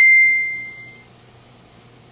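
A single bright, bell-like ding that starts suddenly and rings out, fading away over about a second.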